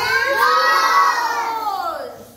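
A group of young children calling out an answer together, many voices in one drawn-out shout that rises and then falls away, ending near the end.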